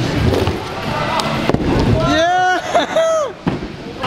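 Small scooter wheels rolling with a rumble over plywood ramps, with a sharp knock about a second and a half in. Then, from about two seconds in, loud drawn-out shouts and exclamations.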